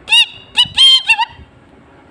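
A man imitating a red-wattled lapwing's alarm calls with his voice: three sharp, high-pitched calls, the middle one the longest. It is a variant of the lapwing's alarm, whose tone marks different levels of danger.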